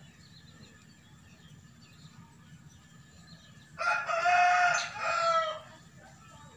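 A rooster crows once, about four seconds in, in one call of under two seconds that breaks briefly near its end. Faint small-bird chirps sound in the background.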